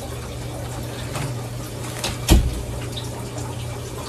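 Fabric rustling as a gingham top is pulled on over the head and T-shirt, with one sharp thump a little past halfway through, over a steady low hum.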